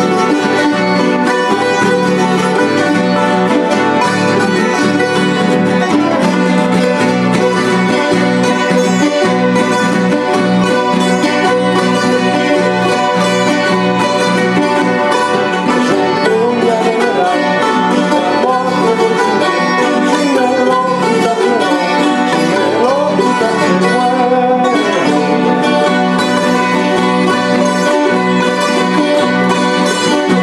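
Andean plucked string instruments, small multi-course strings with guitar, strumming and picking a lively San Juanito, an Ecuadorian dance tune.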